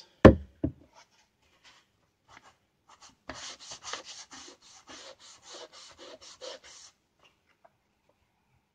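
Folded sponge rubbed back and forth over a roughly sanded wooden block, applying water-based stain: a run of quick rubbing strokes, about four a second, lasting three to four seconds and starting about three seconds in. A sharp knock and a lighter one come first, the knock being the loudest sound.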